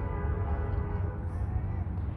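Soft background music with several notes held steadily, over a low rumble.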